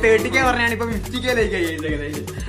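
Young men's voices vocalising playfully in drawn-out sounds that slide up and down in pitch, over a steady low hum.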